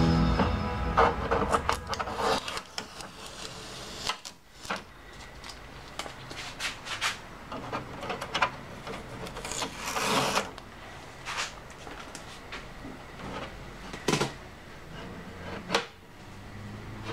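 Plastic trays and lid of an HP DeskJet Ink Advantage 3835 inkjet printer being handled during unpacking: irregular clicks, small knocks and rubbing of plastic as parts are opened and protective tape is pulled off. There is a longer rustling scrape about ten seconds in and a sharp knock near the end. Background music fades out right at the start.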